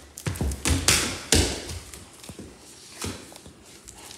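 Quick footsteps and thumps on a hardwood floor: several sharp ones in the first second and a half, then a few fainter ones.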